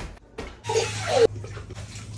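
Water poured from a rinse cup over a toddler sitting in a bathtub, splashing into the bath water for under a second starting about half a second in.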